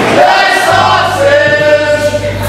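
Several men singing together in loose chorus, held notes over strummed acoustic guitars, a live band with others joining in at the microphones.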